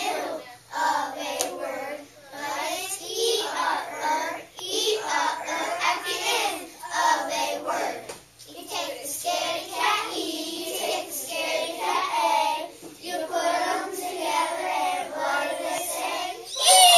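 A group of children chanting a rhythmic phonics chant in unison for the "ir, ur, er" sound, in short beats with small pauses, with hand sounds along with it.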